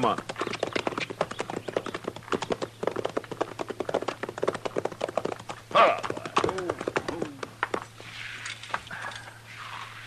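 Radio-drama sound effect of horse hooves clip-clopping at a walk, stopping about seven and a half seconds in, with a short pitched call about six seconds in. A faint high outdoor background follows.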